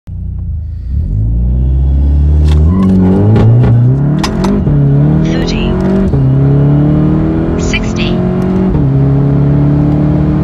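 A tuned 2019 Volkswagen Jetta GLI's 2.0-litre turbocharged four-cylinder launches from a standstill about a second in and accelerates at full throttle, heard from inside the cabin. Its revs climb steadily and drop sharply at each of four quick DSG upshifts.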